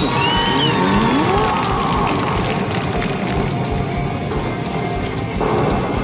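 Hokuto no Ken Battle Medal pusher machine playing its battle-bonus music and sound effects, with sweeping gliding tones in the first second and a half, over a dense, steady arcade din.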